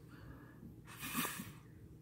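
A man's short breath in through the nose, a soft sniff of about half a second.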